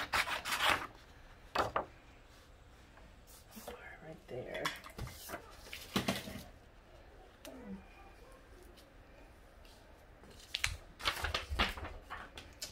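Scissors snipping through sheets of sublimation transfer paper, with a quick run of cuts in the first second. Then scattered rustles and clicks of paper being handled, and a cluster of sharp clicks near the end.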